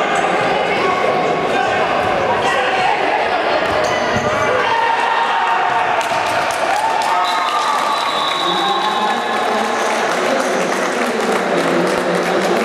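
Futsal ball being kicked and bouncing on a sports-hall floor, echoing in the hall, with players' voices calling out.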